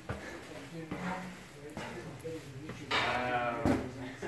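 Faint room sounds with a couple of soft knocks, then a person's voice speaking briefly about three seconds in.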